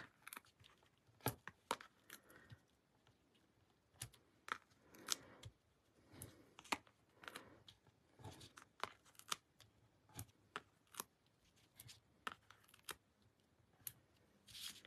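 Faint paper-crafting handling noise: scattered small ticks and soft peeling rustles as cardstock pieces are handled and tiny foam adhesive dots are peeled off their backing sheet and pressed onto a die-cut panel.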